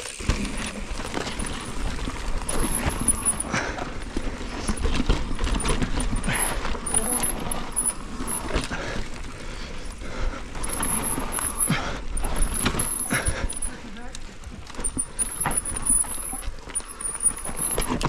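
A mountain bike riding fast down a rough dirt trail. Tyres run over the dirt and the chain, suspension and frame give a continuous irregular clatter over roots and bumps, with wind rushing on the microphone.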